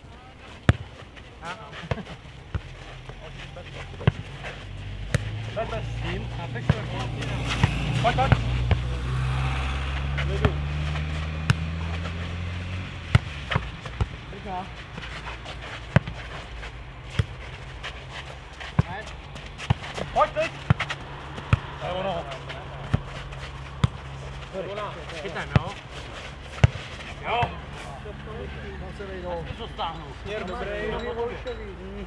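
Futnet ball being kicked back and forth and bouncing on a clay court, heard as irregular sharp knocks through the rally. A motor vehicle's engine swells and fades between about six and thirteen seconds in, the loudest thing in that stretch.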